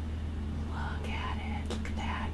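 A woman's soft whispered speech in two short phrases, over a steady low hum.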